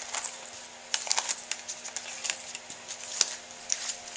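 Stiff pages of a junk journal made from cardboard and food packaging being flipped by hand: a run of sharp, irregular crackles and clicks.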